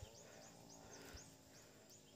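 Near silence: outdoor quiet with a faint high chirp repeating evenly, about four times a second.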